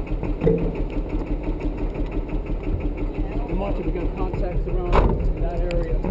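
Truck engine idling steadily, with a single sharp knock about five seconds in.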